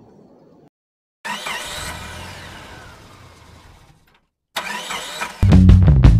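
Edited intro soundtrack: a sound effect with sweeping pitch that fades away over about three seconds. After a short gap, loud rock music with guitar, heavy bass and drum hits kicks in near the end.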